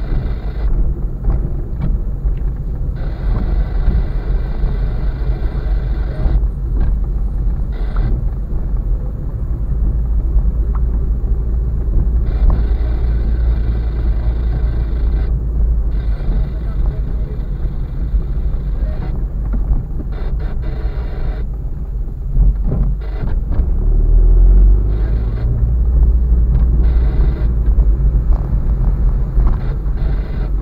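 Road and engine noise inside a car's cabin: a heavy low rumble from the tyres and engine while driving slowly over a rough, cracked concrete road. The engine note rises and the rumble gets louder about two-thirds of the way through.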